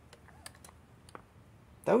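Faint handling noise: a few scattered light clicks and taps. A man's voice starts near the end.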